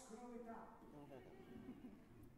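Faint voice of a stage actor speaking, its pitch bending up and down.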